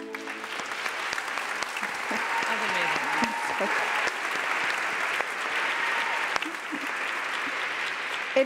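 Audience applauding steadily, with a few voices calling out in the crowd. A closing music sting cuts off just as it begins.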